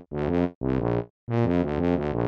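Tuba playing a bouncy run of short, low notes, mostly in quick pairs, with a brief pause about a second in.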